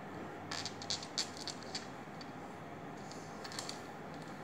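Soft scratches and clicks of fingers working bracelet threads against a wooden tabletop while tying friendship-bracelet knots, in two short clusters, the first about half a second in and the second just after three seconds, over a steady faint room hum.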